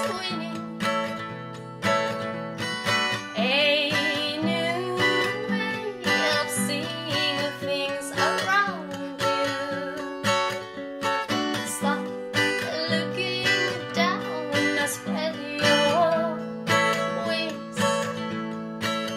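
A woman singing a slow song to her own strummed steel-string acoustic guitar, the strums coming steadily under a voice with a slight vibrato.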